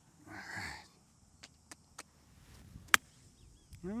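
A golf club striking a golf ball on a full swing: a single sharp crack about three seconds in.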